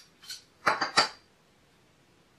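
Small hard parts clicking and clinking as an M.2 NVMe SSD in its adapter board is picked up and handled: a few sharp clicks within the first second, the loudest about a second in.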